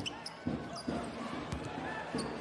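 A basketball being dribbled on a hardwood court, a few separate bounces about half a second apart, over the steady murmur of an arena crowd.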